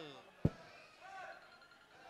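A single sharp knock about half a second in, followed by faint voices in a large hall.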